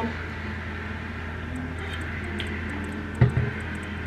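A person drinking water from a plastic bottle, with one short low gulp about three seconds in, over a steady low hum.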